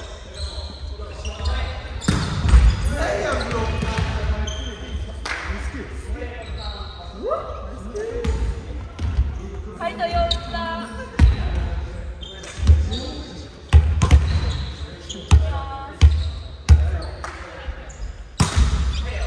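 Indoor volleyball rally in a gymnasium: sharp smacks of the ball being struck, coming more often in the second half, mixed with players' shouted calls.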